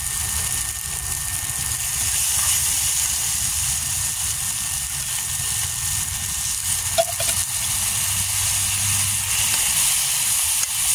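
Onions and tomatoes frying in a pan, a steady sizzle over a low rumble, with a single clink of a metal spoon about seven seconds in.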